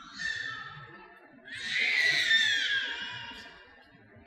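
Two loud martial-arts shouts (kiai) from the performers: a short one right at the start, then a longer, louder one about one and a half seconds in that falls in pitch.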